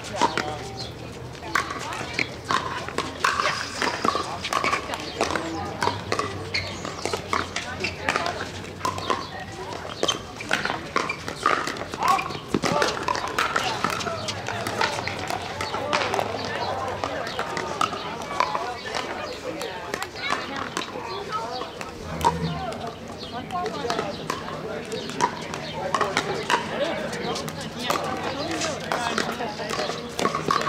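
Pickleball paddles hitting plastic balls on several courts at once: irregular, frequent hollow pops, over background chatter of players and onlookers.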